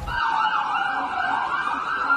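A harsh, siren-like wail that starts abruptly and sweeps up and down in pitch.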